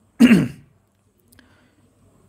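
A man clearing his throat once: a short, loud sound that drops in pitch.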